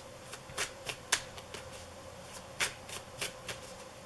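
Tarot deck being shuffled in the hands: cards flicking and snapping against one another in quick, irregular bursts, with a lull of about a second in the middle.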